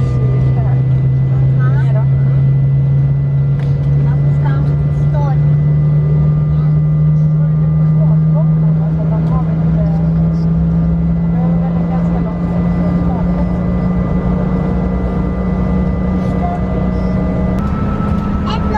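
Airliner cabin noise while taxiing: a loud, steady engine hum that rises slowly in pitch, with thin steady whines above it and faint voices in the cabin.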